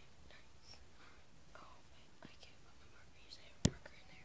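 Faint whispering, with a single sharp click near the end.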